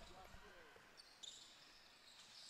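Faint indoor basketball-game sound, near silence overall: a ball bouncing on the court and distant players' voices.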